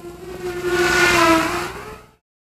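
Racing quadcopter's electric motors and propellers whining in flight, swelling to a peak about a second in and fading, the pitch dropping slightly after the peak as it passes.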